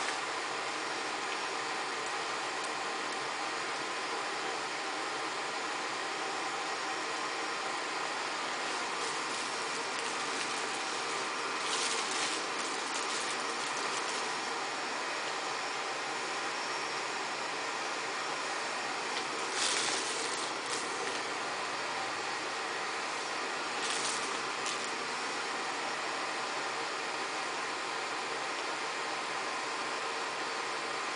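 Arizer Extreme Q vaporizer's built-in fan running steadily on high speed, blowing vapor into a plastic balloon bag. A few brief rustles of the bag's plastic break in.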